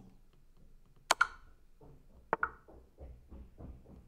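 Two sharp double clicks about a second apart, from a move being played in an online chess game on a computer.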